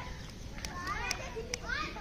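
Children's voices chattering and calling, with a few sharp clicks in between.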